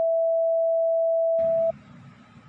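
A steady electronic beep: one pure, mid-pitched tone that starts with a click and is held for nearly two seconds before cutting off suddenly near the end.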